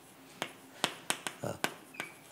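Chalk clicking against a chalkboard as characters are written: a run of about seven quick, sharp taps in under two seconds.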